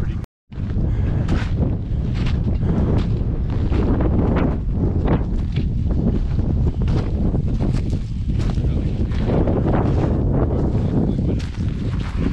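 Wind buffeting the microphone with a heavy, steady rumble, over the irregular crunch of boots on loose volcanic scree.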